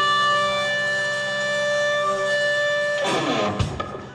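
Live rock band playing, electric guitar among the instruments, holding long steady notes. About three seconds in the held sound breaks into a falling sweep and a few sharp hits, and the level drops away.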